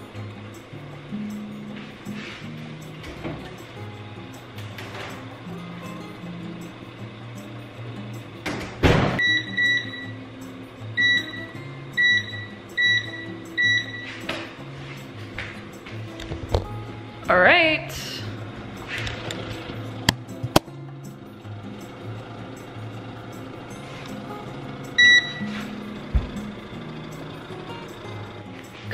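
Short, clear electronic beeps from a wall oven's control panel as its buttons are pressed, several in a row about ten seconds in and one more near the end, over background music. A single thump comes just before the beeps.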